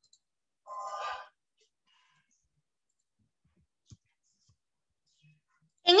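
A short sigh from a woman's voice about a second in, then a single faint click near four seconds, with silence in between.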